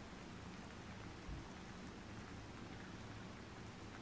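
Light rain falling: a faint, steady hiss with no distinct drops or other events.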